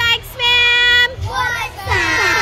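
Children's voices: one child holds a long sung note for about half a second, then several children call out together near the end. A low bass beat runs underneath.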